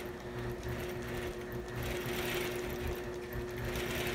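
APQS Millennium longarm quilting machine stitching, with a steady motor hum under an uneven low rumble from the needle mechanism.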